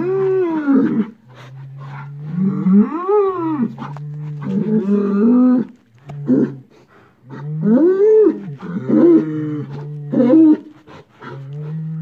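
Several bulls bellowing over a dead cow: long, loud calls that rise and fall in pitch, overlapping and following one another with short gaps.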